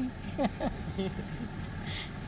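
Steady low engine and road rumble inside a bus cabin, with faint voices in the background.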